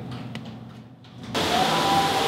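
Quiet room tone, then about a second and a half in, a sudden cut to a loud, steady hiss of large-indoor-space background noise with faint held tones in it.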